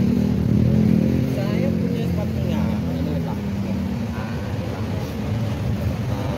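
Street traffic: a motor vehicle engine runs close by, its low hum strongest for the first three seconds and then fading, under background voices.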